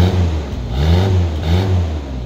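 1996 Toyota Kijang Grand Extra's four-cylinder petrol engine being revved at the exhaust tailpipe: three quick throttle blips, each rising and falling in pitch.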